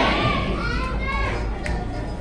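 Children's high voices in a hall, with steady tones of background music coming in near the end.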